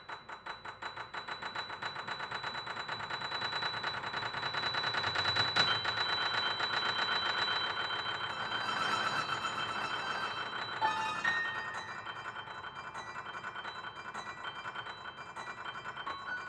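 Grand piano played solo: fast repeated notes that swell louder over the first five or six seconds, then a sharp accent about eleven seconds in, followed by quick, higher figures.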